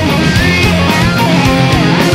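Japanese visual kei rock song: a full band with electric guitars over a steady, driving drum beat, with a lead melody that bends in pitch.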